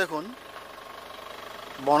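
A vehicle engine idling low and steady with rapid, even pulses, between snatches of speech at the start and near the end.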